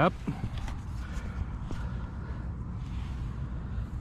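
Low, steady outdoor rumble with a few faint clicks and rustles.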